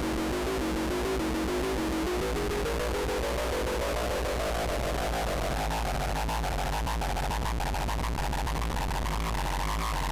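Synthesizer sequence from a Make Noise 0-Coast played through the ERD (Earth Return Distortion) eurorack module, whose dirt-filled circuit adds gritty noise and a steady low hum from picked-up electromagnetic interference. A repeating pattern of stepped notes that, from about two seconds in, climbs steadily higher in pitch.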